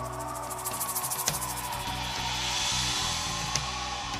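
Live band playing an instrumental passage, with held low notes under a fast high shimmer that gives way to a swelling hiss around the middle.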